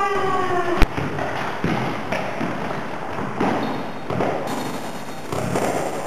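Indoor football in an echoing sports hall: a shout trails off at the start, then the ball is struck hard with a single sharp, loud bang about a second in. Smaller thuds of the ball and feet and indistinct voices follow.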